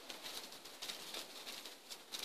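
Faint outdoor background with a bird calling.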